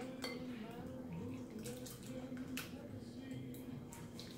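Wire whisk beating a thin egg, milk and sugar custard in a glass bowl, the whisk clinking sharply against the glass a few times, roughly a second apart. A steady low hum runs underneath.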